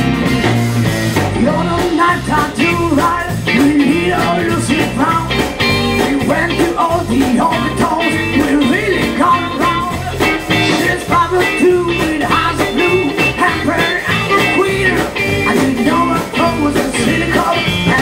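A live electric blues band playing: electric guitar, bass guitar and drum kit, with a bending lead melody over the top. A held chord gives way to a driving rhythmic groove about a second in.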